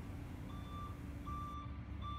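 Faint vehicle reversing alarm beeping: a steady high tone repeating about every three quarters of a second, three beeps, over a low background hum.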